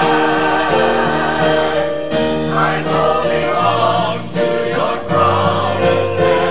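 Mixed church choir of men and women singing in harmony, holding long chords that change about every second or two.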